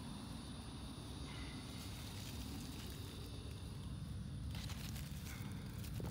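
Watermelon leaves and vines rustling and crackling as a hand pushes through them near the end, over a steady low rumble.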